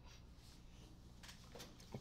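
Near silence: room tone with a faint low steady hum.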